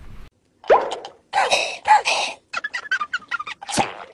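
Cartoon sound effects from an inserted meme clip: a short rising pitch glide about a second in, a couple of noisy bursts, a quick run of clicks, and a falling glide near the end.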